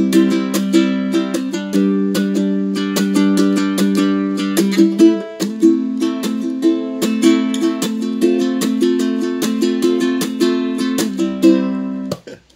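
Ukulele strummed freestyle, with no set strumming pattern: quick, even strokes over held chords, changing chord about five seconds in, then stopping suddenly at the end.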